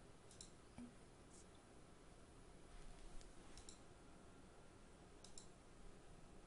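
Faint computer mouse clicks, a few scattered over several seconds and several in quick pairs, over near-silent room tone.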